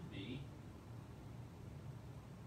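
A brief faint spoken syllable just after the start, then quiet room tone with a steady low hum.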